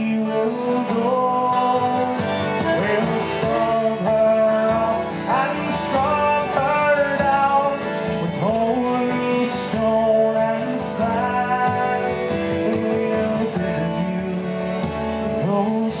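Live folk music: a man singing a Newfoundland sea song with acoustic guitars strumming along.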